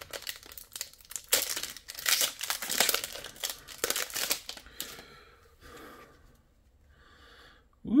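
Foil booster pack wrapper being torn open and crinkled by hand: a dense run of crackling and tearing for about five seconds, then only faint rustling as the cards are slid out.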